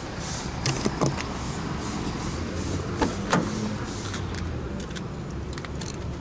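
A car door is unlatched and opened: a few sharp clicks from the handle and latch, over steady street traffic noise.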